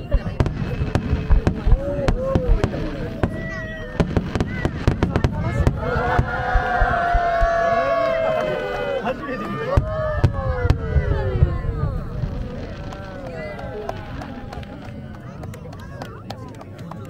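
Aerial firework shells bursting: a fast run of sharp bangs and crackling, densest in the first five seconds or so and thinning out after, with spectators' voices exclaiming throughout and a long drawn-out voice in the middle.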